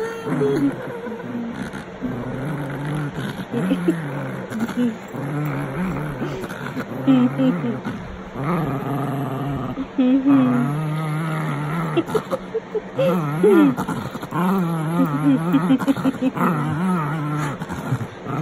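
Small dog growling over and over in long, wavering growls that rise and fall, guarding its plush toy each time a hand touches it.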